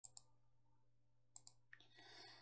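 Faint computer mouse clicks: two quick double-clicks about a second and a quarter apart, over a low steady hum.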